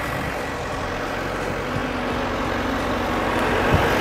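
A tractor's engine running steadily, with a single light knock near the end.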